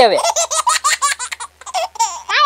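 A person laughing in a quick run of short repeated bursts for about a second and a half, then a brief pause.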